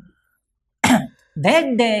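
A man coughs once, a short sharp burst about a second in, after a moment of silence, then goes back to speaking.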